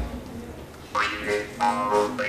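Jaw harp (Hungarian doromb) played by mouth, starting about a second in: plucked, twanging notes whose overtones shift from pluck to pluck.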